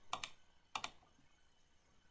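Faint clicks of a computer mouse and keyboard in two short bursts, one just after the start and one a little before the middle, as menu commands are clicked.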